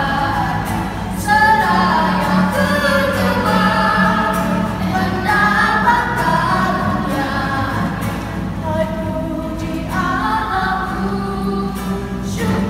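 A woman and two children singing a Christian hymn together in phrases over a steady instrumental accompaniment.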